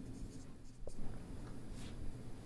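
Dry-erase marker drawing on a whiteboard: faint strokes as a small box and its label are drawn, with a short tick just under a second in.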